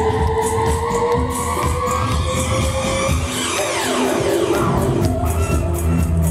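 Theremin played over a backing track with a steady beat. It holds one tone that glides slowly upward for the first three seconds, and then there is a steep falling swoop about halfway through.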